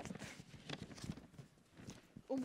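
Faint handling noise: a few soft, irregular knocks and rustles as a handheld microphone and sheets of paper are moved.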